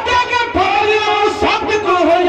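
Dhadi-style singing: a high voice holding long, wavering notes, with sarangi and dhadd hand-drum accompaniment.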